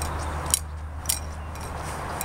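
A steady low rumble in the background, with two sharp clicks about half a second apart.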